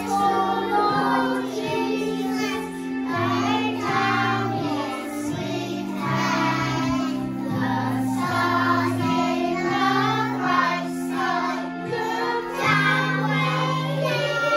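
A group of young children singing a song together over an instrumental accompaniment, with sustained low notes that change in steps about once a second beneath the voices.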